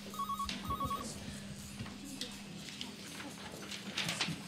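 Telephone ringing with an electronic warbling ring: two short bursts about half a second apart within the first second, over a steady low hum and light knocks.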